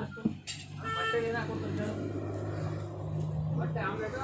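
A steady low engine hum, as of a motor vehicle idling, running under a brief voice about a second in.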